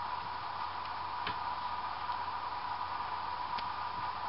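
Steady hiss of a home recording's background noise with a faint constant high-pitched tone, broken by two faint ticks, one about a second in and one near the end.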